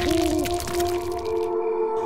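Spooky background music: a steady held drone with a wavering, swooping tone over it, and a dense crackle of clicks that stops about three quarters of the way through.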